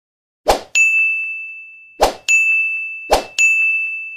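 Animated end-screen sound effects: three times, a quick swish followed by a bright, high bell-like ding that rings out and fades.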